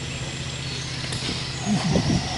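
Steady low mechanical hum, resembling an engine running, under outdoor background noise, with a brief vocal sound near the end.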